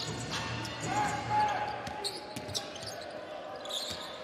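Basketball being dribbled on a hardwood court during live play, with short bounces over the hum of the arena crowd and players' voices.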